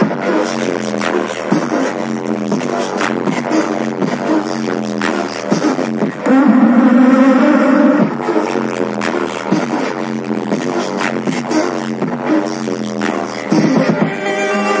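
Live band music played over a concert sound system, dense and continuous with sharp percussive hits throughout and a louder passage about six seconds in.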